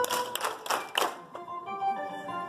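A roomful of people cheering and clapping in a few short bursts during the first second, over quieter background music.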